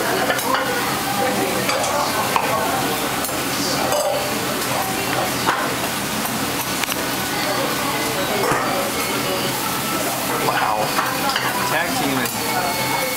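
Okonomiyaki sizzling on a hot teppan griddle. Irregular scrapes and clinks come from a sauce brush, sauce pot and metal utensils working over the griddle.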